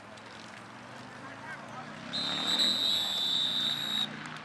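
Referee's whistle blown in one long, shrill blast lasting about two seconds, starting about halfway in, blowing the play dead after a tackle. Voices of players and spectators murmur underneath.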